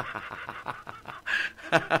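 Soft, breathy laughter from a man, a run of short chuckles; a voice starts speaking again near the end.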